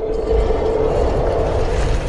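A loud, steady rumbling swell with a low hum, a sound effect laid under an animated motion-graphics intro.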